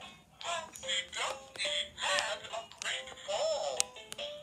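A children's electronic nursery-rhyme book toy playing a song in a synthetic singing voice, in short sung phrases. Its sound is odd enough to be called 'possessed', which the owner puts down to weak batteries.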